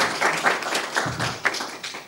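Audience applauding, a dense patter of hand claps from a small room of listeners, fading near the end.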